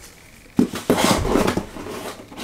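Items being handled and knocked together while a package is unpacked: a run of knocks and rustles starting about half a second in.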